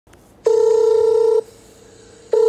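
Phone ringing for an incoming call: one steady electronic tone lasting about a second, starting about half a second in, then a pause before the next ring.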